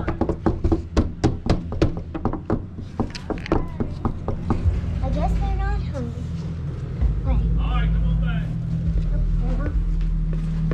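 A rapid run of sharp taps, about four a second, for the first four to five seconds, then a low steady rumble with a few brief unclear voices.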